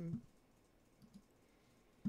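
Near silence with two faint computer-mouse clicks about a second in.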